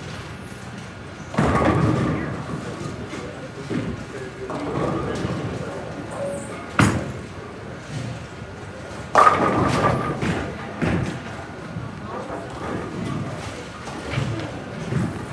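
Bowling alley sounds: pins crashing and balls thudding on the lanes. There are two loud clatters, about a second and a half in and about nine seconds in, and a sharp crack in between, over background chatter and music.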